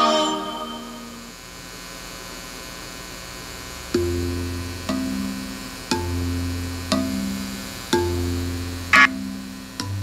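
Background music fades out, leaving a few seconds of low steady hum; then a pitched note over a low bass is struck about once a second, six times, with a brief sharper hit near the end.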